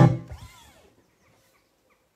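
Acoustic guitar's last strummed chord ringing out and fading away within about a second as the song ends, followed by near silence.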